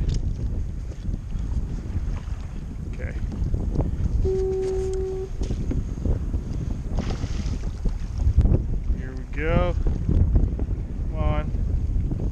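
Wind buffeting the microphone over choppy water on a kayak. About four seconds in a steady tone sounds for about a second, and near the end there are two brief voice-like calls.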